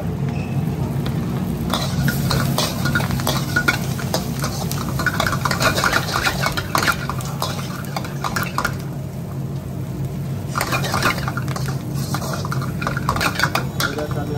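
A metal ladle scrapes and clatters against a wok as red spinach, egg and rice are stir-fried, over a steady low hum. The stirring starts about two seconds in, pauses briefly around nine seconds, then resumes.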